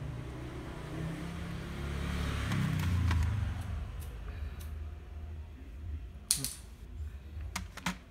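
Plastic CD and cassette cases handled on a table, giving a few sharp clicks, the loudest about six seconds in. Under them, a low rumble swells and fades over the first half.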